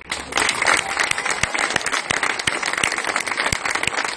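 Audience applauding: many hands clapping in a dense, steady patter that begins just after a brass band's piece ends.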